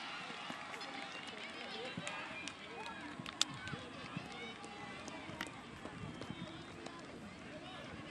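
Young football players and onlookers calling and shouting across an open grass pitch during play, faint and distant, with a single sharp knock about three and a half seconds in.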